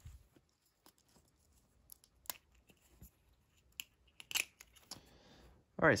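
Scattered small plastic clicks and light handling noise as a 1/6-scale figure's plastic telescope case is opened and the tiny telescope taken out. The sharpest click comes a little past the middle, followed by a soft rustle.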